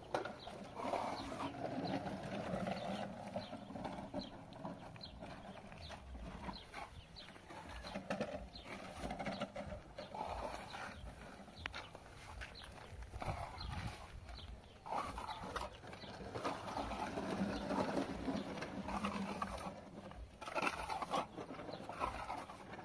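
A plastering trowel scraping and slapping wet plaster onto a house wall in short, repeated strokes. Animal calls, including birds cooing, sound in the background, loudest near the start and again about three-quarters of the way through.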